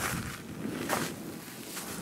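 Footsteps crunching on loose volcanic cinder and sulfur-crusted lava, with two louder steps about a second apart.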